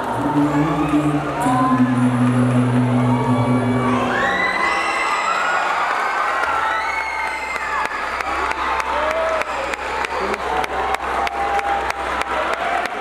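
An audience screams, whoops and cheers over the last sustained chord of the dance music. The music stops about four seconds in while the cheering carries on, and clapping joins in over the second half.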